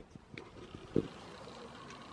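A handheld camera being moved about inside a car cabin: faint rubbing and small knocks, with one louder thump about a second in, over a faint steady hush.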